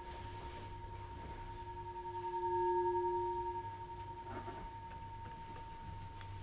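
A singing bowl ringing with a steady low tone and higher overtones. The tone swells louder around the middle and then fades back.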